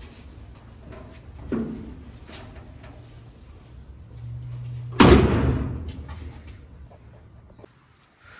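Shuffling and light knocks as a person moves out of a stripped car body, then one loud slam about five seconds in that rings out briefly.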